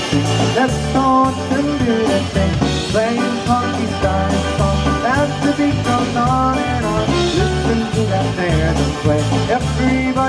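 A live polka band plays an instrumental passage over a steady drum beat, with bass, electric guitar, keyboard, saxophone and accordion.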